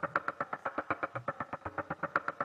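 A sampler sequencer plays short slices of recorded spring sounds as a rapid, uneven run of short hits, many to the second. The fast attack makes each hit sharp and the pattern way more percussive.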